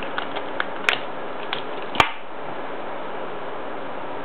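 A few light clicks and taps from a cigarette pack being handled in the hands, with one sharp click about two seconds in, over a steady hiss.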